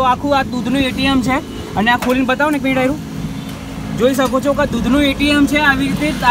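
People talking, with a steady low hum running underneath; the talk pauses briefly in the middle.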